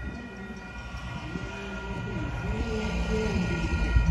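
Union Pacific train approaching a grade crossing at about 35 mph, its horn sounding a steady multi-note chord while the low rumble of the train grows louder.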